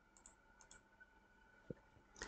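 Near silence broken by a single short mouse click near the end, with a few fainter ticks earlier on.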